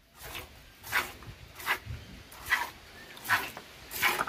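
Milk squirting by hand from a cow's teat into an enamel bucket: short hissing squirts in a steady rhythm, about one every 0.8 seconds, roughly five in all.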